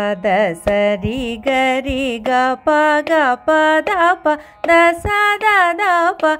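A singer singing a line of Carnatic swaras (sa, ri, ga, pa, da note names): a run of short notes, two or three a second, with pitch bends and slides between them. The notes are grouped into phrases with small breaks, following the hyphens in the notation.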